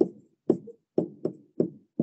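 A stylus tapping on a tablet screen while numbers are handwritten: a quick series of short, dull knocks, about three or four a second.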